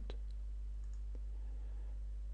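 Two faint computer mouse clicks, one right at the start and a softer one about a second in, over a steady low hum.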